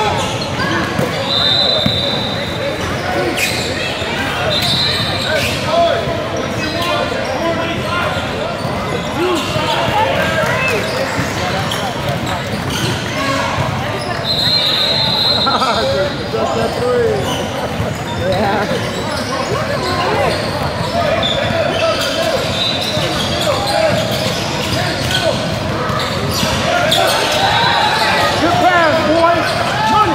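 Basketball game sounds in a large gym: a basketball bouncing on the hardwood floor and indistinct voices of players and spectators, with a few short high squeaks of sneakers on the court.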